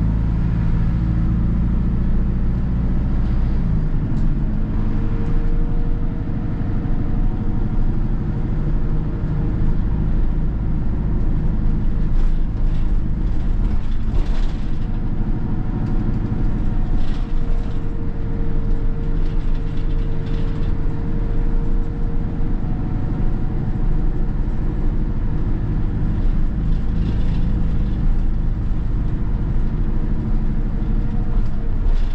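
Hino Poncho small bus's four-cylinder diesel engine running under way, with road noise, heard from inside the cabin at the front. The engine note shifts about four seconds in and otherwise holds steady.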